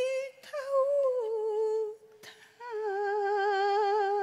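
A Cantonese opera melody: one line of long held notes with wide vibrato, each sliding a little lower, broken by a short gap about two seconds in where a single sharp click sounds.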